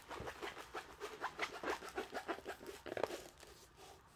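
Handling noise from a rolled diamond painting canvas sheet being rolled and moved across a work surface: a string of irregular soft rustles and crackles that die down about three seconds in.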